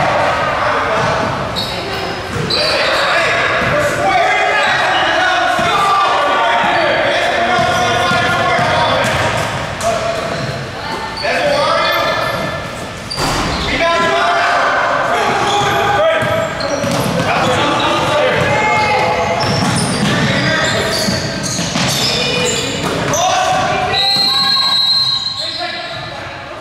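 Basketball bouncing on a hardwood gym floor during play, with players' and spectators' shouts echoing in the gym. A referee's whistle blows near the end.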